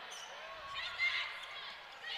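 Volleyball rally in an arena: steady crowd noise with a few squeaks of players' shoes on the court.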